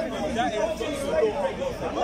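Voices of people talking in an outdoor crowd, speech going on throughout.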